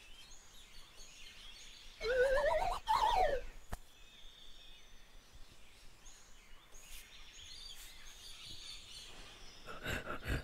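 Faint outdoor bush ambience. About two seconds in, a bird gives a loud warbling call lasting about a second and a half, first rising and then falling in pitch. A few knocks sound near the end.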